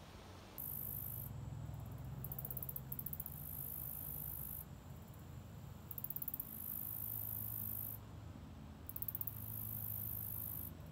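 A chorus of insects, very high-pitched: a steady shrill buzz broken about every three seconds by short, rapidly pulsing trills, over a faint low rumble.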